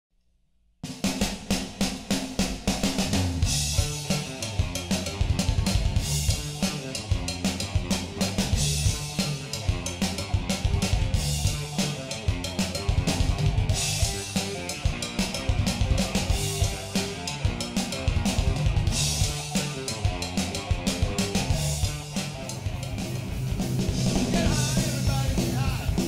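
Live hard rock band playing an instrumental passage, with a busy drum kit over bass and electric guitar. It starts suddenly about a second in.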